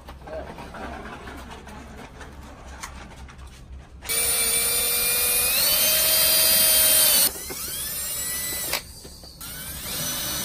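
Cordless drill/driver driving a screw through the flange of a locking end cap into a PVC rod tube. After a few seconds of quiet, its motor whines steadily for about three seconds, steps up in pitch partway, and winds down when released. It starts again shortly before the end.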